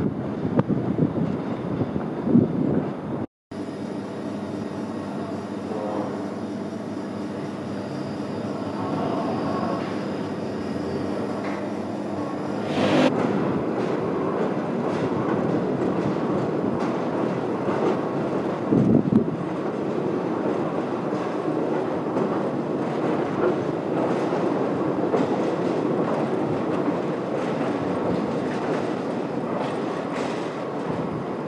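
Tees Transporter Bridge in motion, its gondola hung from a trolley that runs on rails along the top span. After a brief dropout a few seconds in, a steady machine hum with several tones runs for about ten seconds, then gives way to a rumbling, rattling running noise.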